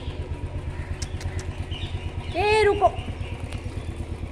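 A small engine idling with a steady low putter.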